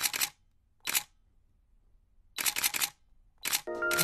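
Camera shutter click sound effects in short runs separated by dead silence: a couple at the start, one about a second in, a quick run of several about two and a half seconds in, and another near the end. A steady musical tone starts just before the end.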